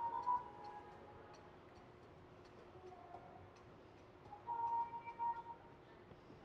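Faint background music: soft sustained melody notes with a light ticking beat, a little louder near the end.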